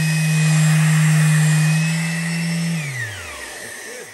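Electric rectangular-pad finishing sander running on white oak plywood, a steady motor hum with a high whine. About three seconds in it is switched off and winds down, its pitch falling away over about half a second.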